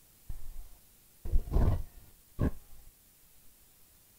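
A man's exasperated vocal sounds: three short non-word utterances, the middle one the longest and loudest, voicing frustration at finding a second fault.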